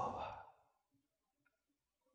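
A man's voice trailing off at the end of a phrase into a soft exhaled breath in the first half second, then near silence.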